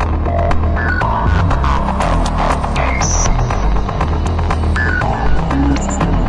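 Electronic music with a heavy pulsing bass, dense quick percussion and short high synth blips.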